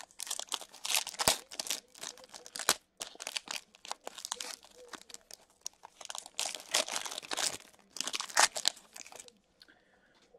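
Foil trading-card pack wrapper being torn open and crinkled by hand, in irregular bursts of crackling that stop a little before the end.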